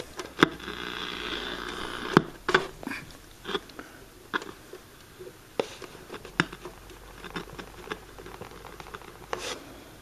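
Scattered clicks and scrapes of a hand turning the tuning knob of a Zenith A-410-L solid-state FM/AM table radio, with a short stretch of static from its speaker near the start. No station comes in on the FM band, which the owner takes to mean the FM section is not working.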